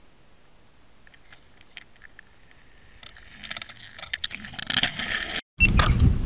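Clicking and crunching picked up by an underwater camera on a fishing line. It starts as faint scattered clicks and builds over the last few seconds into a dense crackle as a fish attacks and mouths the chicken-offal bait. It cuts off abruptly near the end and gives way to a loud low rumble.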